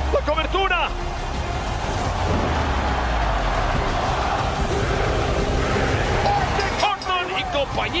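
Arena crowd cheering at a wrestling match, with background music underneath and brief shouted voices in the first second and again near the end.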